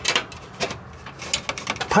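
Vinyl soffit panel being pushed and worked into its metal channel by hand, giving a scatter of faint, irregular clicks and ticks as the plastic flexes and catches on the edge.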